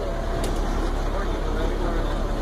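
Heater and defroster blower fan blowing steadily over a truck's idling engine, heard inside the cab, with one light click about half a second in.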